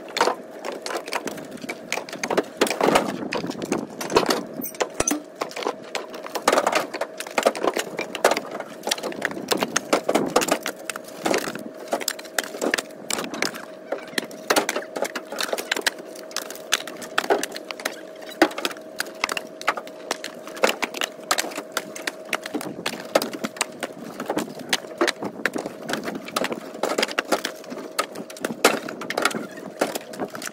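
Split firewood being tossed from a pickup bed onto a pile: a constant irregular clatter of logs knocking and landing on other logs, several a second. A faint steady hum runs underneath.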